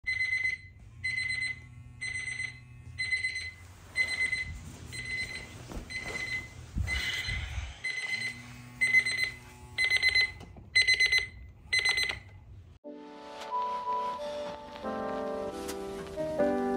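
An electronic alarm beeping in a high tone about once a second, with rustling and a low thump about halfway through. The beeping stops about 12.5 seconds in, and piano music begins.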